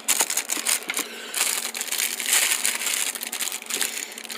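Thin plastic packing bags crinkling and crackling as they are handled, a dense run of crackles with a short lull about a second in.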